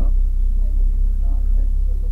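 Toyota Supra A90's turbocharged 3.0-litre inline-six idling at a standstill, a steady low rumble heard from inside the cabin.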